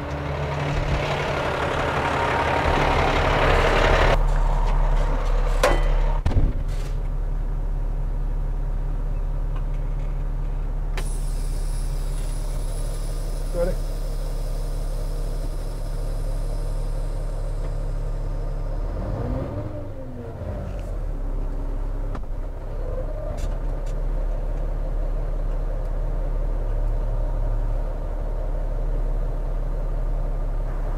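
Diesel truck tractor's engine running steadily as it pulls forward away from a lowboy trailer, once the gooseneck has been disconnected. A hiss fills the first four seconds and stops sharply, and a short whine rises and falls about twenty seconds in.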